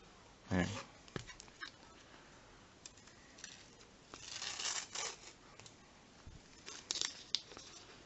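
Foil Panini sticker packet being torn open and crinkled by hand: small crackles, a longer rustling tear about four to five seconds in, and a few sharp crackles near the end.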